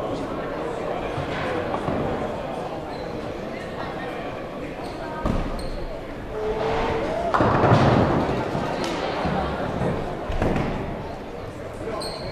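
A nine-pin bowling ball lands on the lane with a thud about five seconds in and rolls with a low rumble. About two seconds later it crashes into the pins, which clatter loudly. A second ball lands and rolls near the end, over the murmur of voices in the hall.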